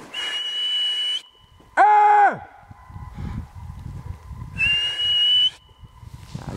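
A whistle blown in two long steady blasts: one at the start lasting about a second, and another about four and a half seconds in that rises slightly in pitch. About two seconds in, between them, comes one short loud call with a clear pitch, the loudest sound here.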